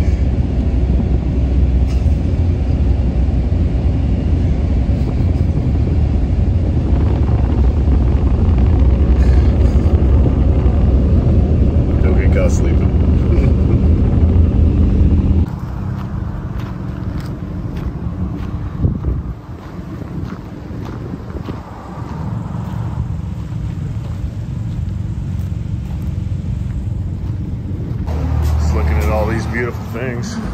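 Steady low rumble of road and engine noise inside a moving vehicle's cabin. About fifteen seconds in it cuts off suddenly to a quieter outdoor street background.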